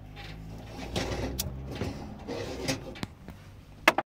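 Handling sounds at a small gas stove: a pot set down and moved on the burner grate, with a few sharp clicks and knocks over a low hum.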